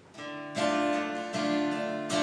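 Acoustic guitar strummed in ringing chords, beginning just after a brief hush: the opening bars of a worship song before the singing comes in.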